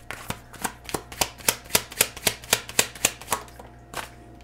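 A deck of oracle cards being shuffled by hand: a steady run of crisp card slaps, about four a second, stopping shortly before a card is drawn.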